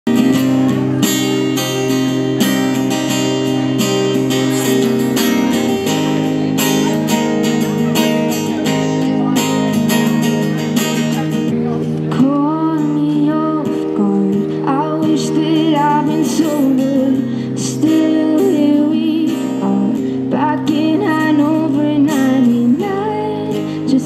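Acoustic guitar strummed, with a woman's voice singing into a microphone, the singing coming in about halfway through.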